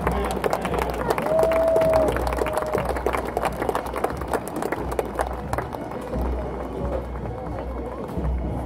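Irregular knocks and steps close to a handheld recorder, with wind rumble on the microphone that comes and goes, over outdoor crowd sound. A single clear held note sounds about a second in for under a second, with a fainter one just after.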